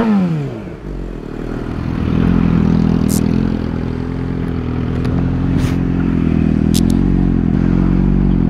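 Honda CBR250R single-cylinder motorcycle engine: a rev falling away at the start, then running at a steady speed. A few short sharp clicks sound over it.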